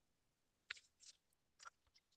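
Near silence on a video-call line, broken by a few faint, brief clicks.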